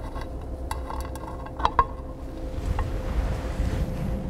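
A few light metallic clicks and clinks, mostly between one and two seconds in, as hex cover bolts are unscrewed and the side cover comes off the arm of a small industrial robot, over a steady low background hum.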